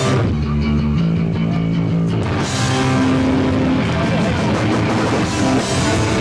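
Hardcore punk band playing live: distorted electric guitar and bass chords held for the first two seconds, then the full band comes in and the sound fills out with drums and cymbals.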